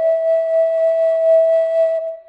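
Slow solo flute melody, one long breathy note held steady.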